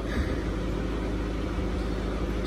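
A steady low mechanical hum with a constant background noise, unchanging throughout.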